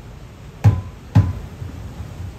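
Two deep strikes on an ipu (Hawaiian gourd drum), about half a second apart, the second slightly louder.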